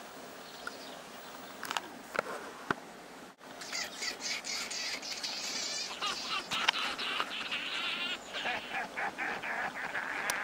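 Songbirds chirping and singing outdoors, a light background at first, then much louder and busier from about four seconds in, with a few sharp clicks in the first three seconds.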